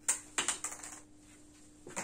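A few sharp plastic clicks and taps of dry-erase markers being handled at a whiteboard, bunched in the first second, then quiet over a faint steady hum.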